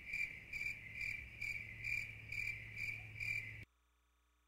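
A cricket chirping steadily, about three short high chirps a second, over a faint low hum; the sound cuts off suddenly near the end.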